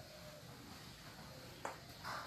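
Faint room noise while a person stands up from a desk, with one short click about a second and a half in.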